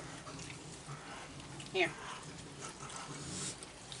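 A crowd of raccoons eating at close quarters: faint scattered chewing, shuffling and small clicks, busiest in the second half.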